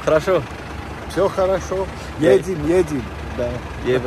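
Voices talking briefly over the steady low rumble of an idling minivan engine.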